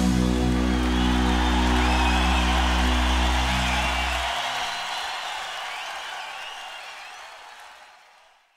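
End of a live rock performance: the band's last chord is held with a steady bass under audience cheering, applause and whistles. The chord cuts off a little past halfway, and the crowd noise then fades out to silence near the end.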